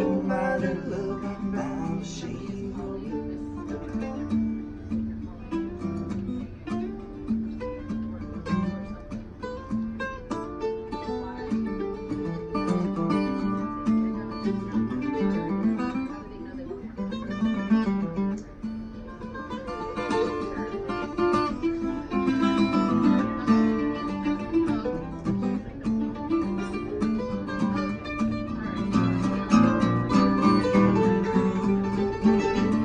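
Acoustic guitar and a second plucked stringed instrument playing an improvised instrumental passage over a simple two-chord form, one strumming while the other plays moving single-note lines.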